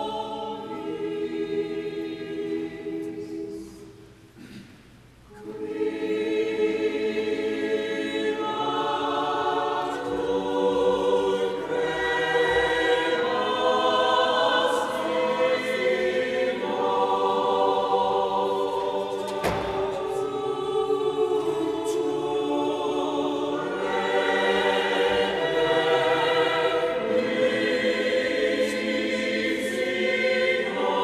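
Choir singing a slow sacred piece in a reverberant church, with a short break between phrases about four seconds in.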